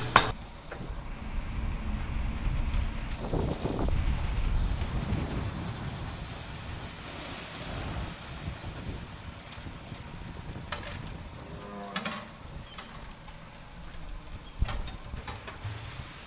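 Low, steady rumble of a concrete mixer truck's engine running, with wind on the microphone, swelling for a few seconds early in the stretch. A couple of faint knocks come near the end.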